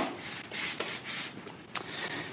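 A shoe comes down with a sharp tap onto an Olympus videoscope's insertion tube on a laminate floor, then scuffs and rubs back and forth over it, with another tap near the end.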